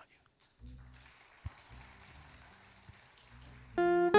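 Quiet low sustained tones, then near the end a bağlama (long-necked Turkish lute) comes in loudly with plucked notes, opening the next song.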